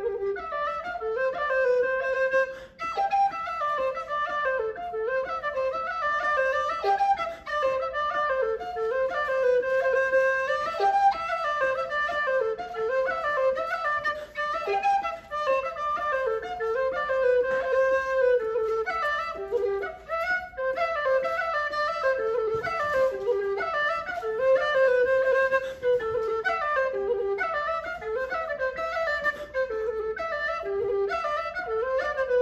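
Solo low whistle playing an Irish jig melody, the tune running on with short dips every few seconds.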